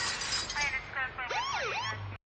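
A siren-like wail sweeping rapidly up and down in pitch, with short chirping bursts midway, as the track ends.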